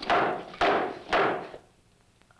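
Three hammer blows on a small portable radio, about half a second apart, each a sudden hit that dies away quickly.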